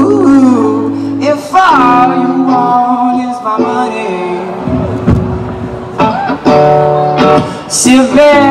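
Live pop song: a man singing into a microphone while strumming chords on an electric guitar, the voice rising and falling in phrases over held chords.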